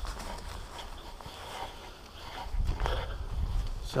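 Footsteps crunching on gravel and dry fallen leaves, with a low rumble on the microphone of a handheld action camera in the second half.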